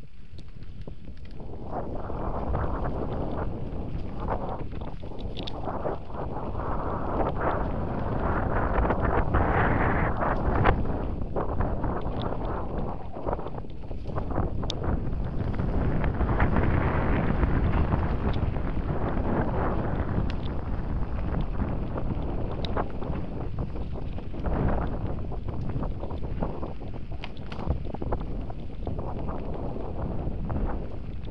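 Wind buffeting the camera microphone and tyres rumbling over a dirt forest trail as an electric mountain bike is ridden, with scattered clicks and rattles from the bike over bumps. The rushing noise swells and eases with the riding speed, loudest around the middle.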